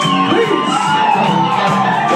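Live band playing loud amplified music, with shouted voices over it.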